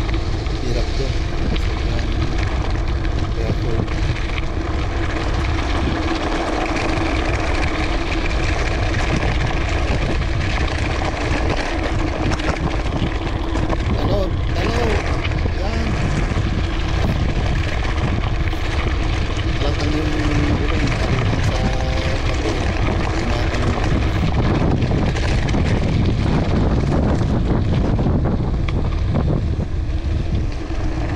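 Wind buffeting the microphone and tyres rolling over a gravel road as a mountain bike descends fast downhill: a loud, steady rumble with a constant drone running through it.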